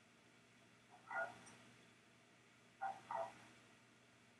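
Near silence, broken by three brief faint murmurs of a person's voice: one about a second in and two close together near the end.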